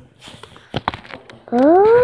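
A few clicks and rubbing knocks from a phone being handled close to the microphone. Then, about one and a half seconds in, a baby lets out a loud, drawn-out vocal sound that rises and then falls in pitch.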